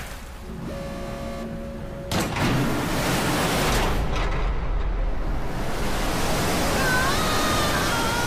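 Water released from a dam's outlets rushing out over dry ground: a sudden surge of rushing noise about two seconds in, then a steady heavy rush with a deep rumble.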